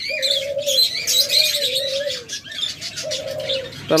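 Doves cooing three times, each coo long and low, over the constant high chirping of caged budgerigars.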